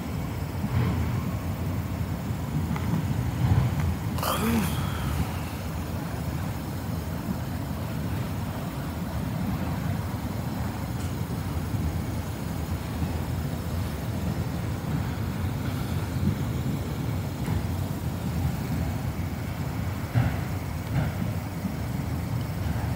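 Freight train of autorack cars rolling past, a steady low rumble of wheels on rail, with a short high squeal a little over four seconds in.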